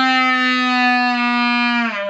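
Solo clarinet holding one long steady note, which slides down in pitch near the end into the next phrase.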